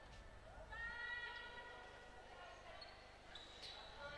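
Faint court sound of a basketball game in play in a large hall: a ball bouncing on the hardwood floor and a distant drawn-out call from the court about a second in.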